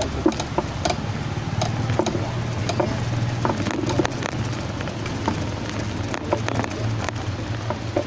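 Small motorcycle engine running steadily at low road speed, a low drone with frequent rattling clicks over it.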